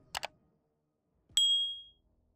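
Two quick clicks, then about a second later a sharp, bright ding that rings on one high tone and fades over about half a second: an animated outro's sound effect.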